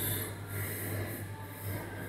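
Steady low hum of store background, with a short sniff or nasal breath close to the microphone at the very start.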